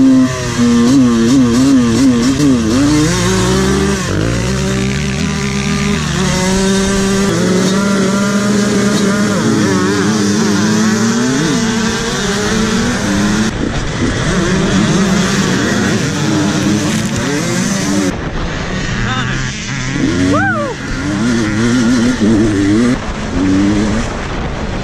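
Several motocross dirt bike engines revving together, held at a steady pitch at first, then climbing and dropping over and over as the bikes accelerate hard across the track. A sharp rise in revs comes near the end.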